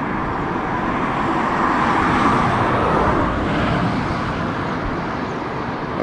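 Road traffic noise: a steady rush that swells as a vehicle passes, loudest about two to three seconds in, then eases off.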